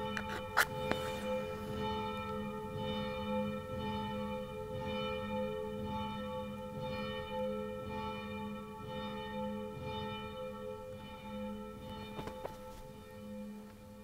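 Church bells ringing: several bells at different pitches sounding together in a steady, regularly pulsing peal that fades away near the end. A short sharp click is heard near the start.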